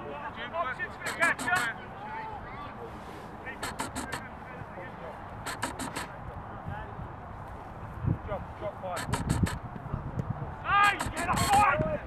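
Shouted calls from rugby players on the pitch, heard briefly about a second in and again near the end. Clusters of sharp clicks come at intervals, and a low rumble enters in the last few seconds.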